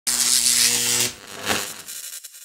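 Channel logo intro sound effect: a loud hiss over a low, even hum that cuts off suddenly about a second in, then a short whoosh.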